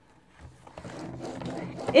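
Scoring blade on a paper trimmer drawn along its track, pressing a fold line into cardstock: a rough scrape lasting about a second and a half.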